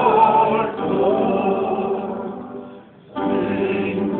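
A choir singing a hymn. A phrase dies away to a brief pause about three seconds in, and the singing starts again just after.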